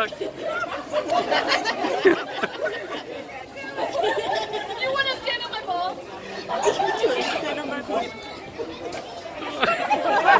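People talking, several voices overlapping at times.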